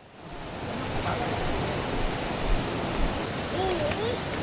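Steady rushing noise that fades in over the first second and then holds, with a faint high, wavering sound near the end.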